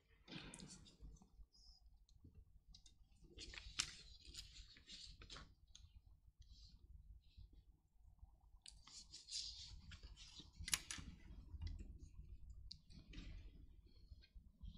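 Near silence broken by faint, scattered clicks and rustles in a few short clusters, as small objects and papers are handled.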